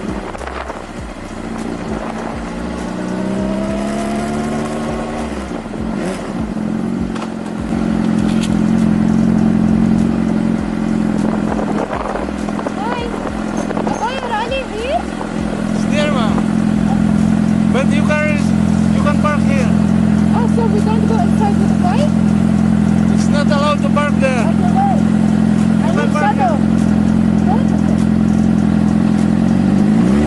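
Suzuki GSX-R's inline-four engine heard close up from the bike: its pitch rises over the first few seconds as it pulls away, then it holds a steady note while riding at low speed.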